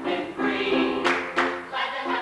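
Several voices singing together in harmony, part of a stage musical number. Two brief hissing accents come a little after a second in.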